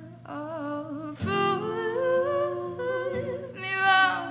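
A woman singing long, drawn-out notes in a slow vocal line, with no clear words. The line steps upward in pitch and is loudest near the end, over a low, steady note held underneath.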